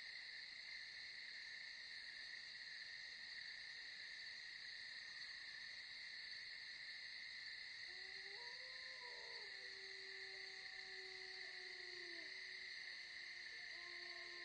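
Faint, steady night chorus of crickets or other insects. From about eight seconds in, a distant man's voice holds long, slowly falling notes: the start of the dawn call to prayer.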